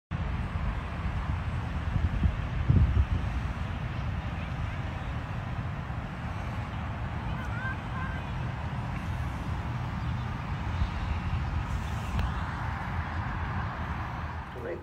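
Outdoor ambience: wind rumbling on the microphone, stronger in gusts about two to three seconds in, over distant traffic and faint voices.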